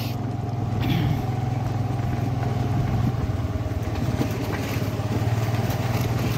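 Honda Activa scooter's small single-cylinder engine running steadily at riding speed, heard from the pillion seat, with road and wind noise over it.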